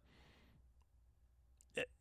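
Near silence in a pause between a man's spoken words, with a faint intake of breath at the start and a short mouth sound near the end.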